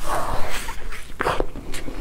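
A close-miked bite into a thick slab of soft chocolate sponge cake, followed by chewing with several small wet mouth clicks.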